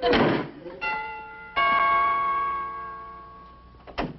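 Two-note doorbell chime: two struck ringing tones, the second lower and ringing out for about two seconds, announcing a visitor at the door. A short thump comes just before the chime.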